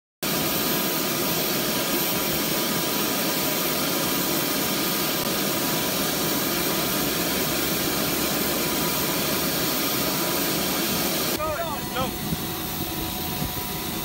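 MH-60S Sea Hawk helicopter's twin turboshaft engines and rotor running, a loud steady noise with a thin high whine, heard from inside the open cabin. About eleven seconds in it cuts to a quieter scene with a few voices over distant engine noise.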